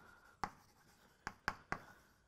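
Chalk writing on a blackboard: a few short, sharp taps of the chalk striking the board as letters are formed, one about half a second in and three in quick succession a little after one second.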